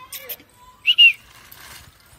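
A short, loud, high-pitched whistle in two quick parts about a second in, after a few light clicks.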